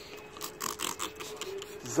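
A new plastic spray bottle being twisted open and handled: a short run of quick, scratchy plastic clicks and rasps in the first second.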